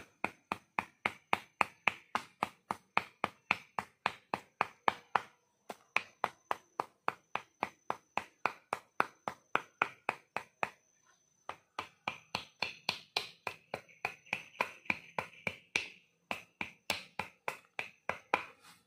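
Bow drill for friction fire: the wooden spindle, spun back and forth by the bow on a wooden fireboard, grinds in short rhythmic strokes at about four a second, with two brief pauses. Each stroke grinds hot wood dust from the fireboard toward an ember.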